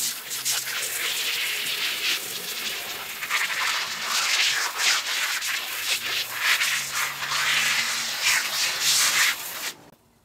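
A brush scrubbing a wool rug by hand in quick, uneven back-and-forth strokes, stopping suddenly near the end.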